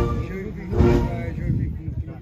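Voices of people in a crowd over a low rumble, loudest about a second in.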